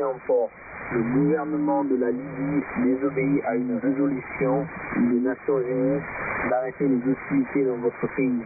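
A man's voice reading out a warning message, received over shortwave radio: narrow, thin-sounding audio with a hiss of static under it.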